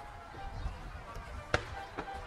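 A single sharp firework bang about one and a half seconds in, over the steady murmur of a crowd of spectators.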